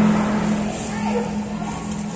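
A steady low hum, like a running motor, with faint voices chattering in the background.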